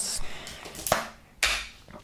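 Snap-on plastic lid of a cotton candy tub being pried off: a sharp click about a second in, then a short rustling scrape of plastic.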